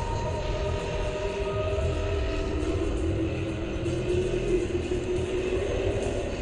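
A steady deep rumble under long, slowly shifting held tones, a dark drone-like intro soundscape.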